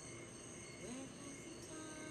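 Faint soft background music with a recorded cricket chorus playing steadily underneath, and a brief rising tone about a second in.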